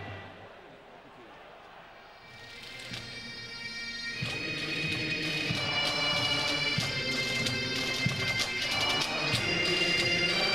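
Pipe band playing on the field, its bagpipes holding steady notes over regular drum beats, swelling in from a quiet stretch about two seconds in.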